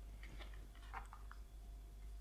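A few faint, light clicks and ticks as a Samsung Super Fast Wireless Charger Duo charging pad is handled and turned over in the hands.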